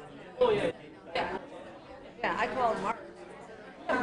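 Indistinct voices of people talking among themselves: short snatches of conversational speech with pauses between.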